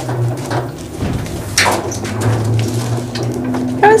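Two Fisher & Paykel Smartdrive direct-drive washing machine motors spinning together, wired in parallel so that one drives the other as a three-phase generator and they run in sync: a steady low hum. A brief sharp noise comes about one and a half seconds in.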